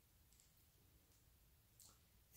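Near silence: room tone, with a faint click near the end.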